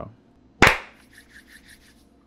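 A single loud, sharp whip-like hit about half a second in, dying away within a few tenths of a second, followed by faint quick ticking.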